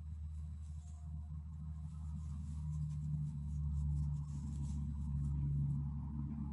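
Faint, irregular scratching and rubbing of a crochet hook drawing yarn through stitches, over a steady low hum.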